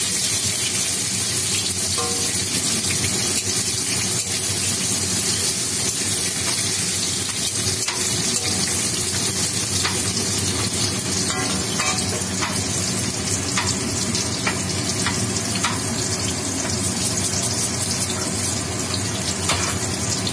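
Vegetable pieces frying in hot oil in a metal kadai, a steady sizzle, with short clicks of the spatula stirring against the pan now and then.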